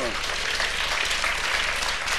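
Studio audience applauding, a steady even clapping.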